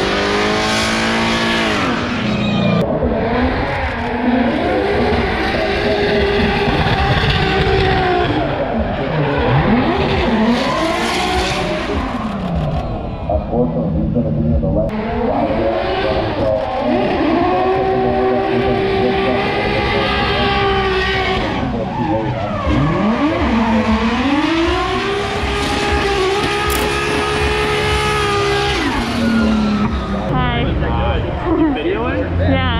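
Drift cars running hard past the fence one after another, engine notes sweeping up and down repeatedly as they rev through the slide, with tyres screeching. Loud and continuous, with several passes.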